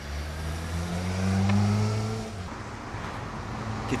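Motorcycle engine accelerating past. Its pitch rises slightly and it is loudest about halfway through, then fades away.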